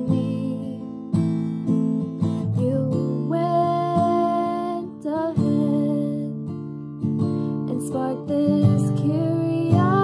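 Acoustic guitar strummed in chords through an instrumental passage of a slow song, the strums coming every second or so with the chords left to ring between them.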